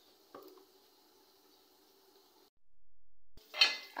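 A single faint knock as marinated chicken is tipped from a plastic container into a nonstick frying pan, over a faint steady background hum. The sound drops out completely about two and a half seconds in.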